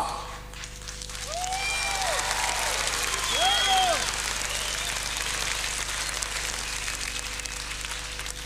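Theatre audience applauding as a song ends; the clapping swells about a second in and holds steady, with a couple of drawn-out calls from the crowd over it.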